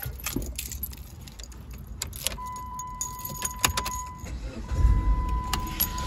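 A bunch of keys jangling and clicking as they are handled inside a car, with knocks of handling throughout. About two seconds in, a steady high electronic beep tone starts and keeps on, briefly breaking once.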